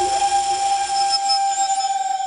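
One long, steady whistle over a hiss, a whistle sound effect laid on the soundtrack.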